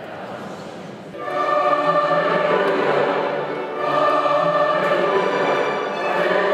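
Church choir singing the Gospel acclamation. It comes in about a second in with long, held phrases, with a short dip just before the four-second mark.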